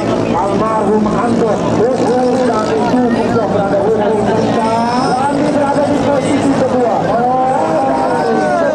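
Small engine of a 6–7 hp class ketinting longtail racing boat running flat out in a steady drone, with a man's voice talking loudly over it.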